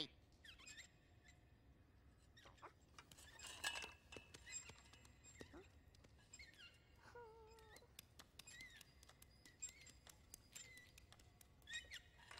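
Near silence, broken by a few faint, short animal squeaks and chirps that slide downward, and scattered faint ticks.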